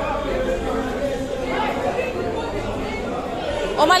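Crowd chatter: many voices talking over one another, no single one standing out, until one voice starts speaking clearly near the end.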